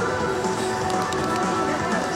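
Music with sustained, held notes; no other distinct sound stands out.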